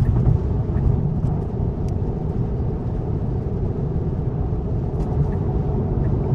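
Steady road and tyre noise inside a Tesla's cabin at highway speed, about 70 mph, with no engine note.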